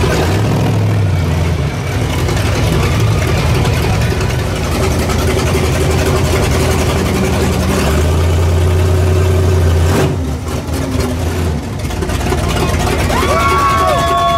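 Monster truck engine running loud and deep, heard from on board, with the revs swelling briefly about half a second in and again for a couple of seconds around eight seconds in.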